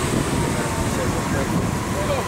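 Steady low rumble of city street traffic with wind buffeting the microphone, and faint voices under it.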